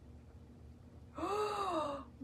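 A woman's drawn-out, breathy sigh of admiration, starting about a second in, its pitch rising and then falling, after a second of faint room tone.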